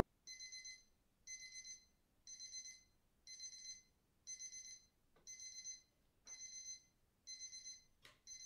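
A timer's alarm sounding faintly in short high-pitched bursts, about one a second, to mark the countdown's end.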